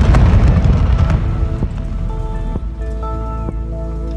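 Background music with steady held notes and a beat of about two knocks a second. Over it, the deep rumble of a distant explosion, an airstrike blast, is loudest at the very start and fades within about a second and a half.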